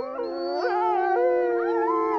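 A pack of grey wolves howling together: several long howls overlap at different pitches, some held level while others rise and fall.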